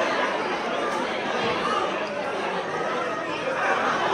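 Crowd chatter: many people talking at once in overlapping conversations, with no single voice standing out.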